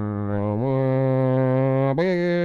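A man's voice humming a steady low drone through a cupped hand, imitating the hum of an electric fan. The pitch steps up a little over half a second in, like a fan switched to a higher speed.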